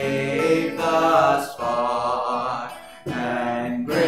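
A man singing a hymn solo while strumming an acoustic guitar, the voice carrying long held notes with vibrato. There is a brief break between lines about three seconds in.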